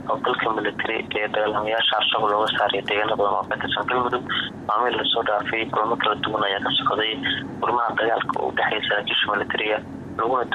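Speech only: a voice reading a news report in Somali.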